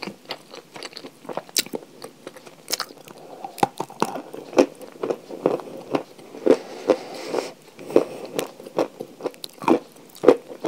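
Close-up crunching and chewing of pieces of edible chalk: a string of sharp, brittle crunches that comes thicker and louder about halfway through.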